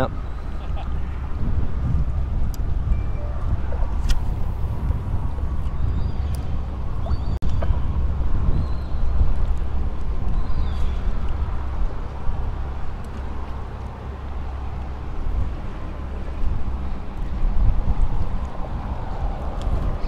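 Wind buffeting the microphone outdoors, a low, uneven rumble that goes on throughout, with a few faint clicks.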